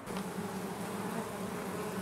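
A cluster of honeybees on the ground buzzing in a steady hum that starts suddenly as the sound comes in.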